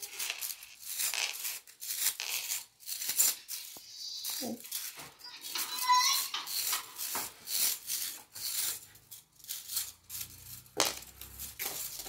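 Plastic rainbow Slinky shuffled from hand to hand, its coils rattling and clicking against each other in quick, irregular runs.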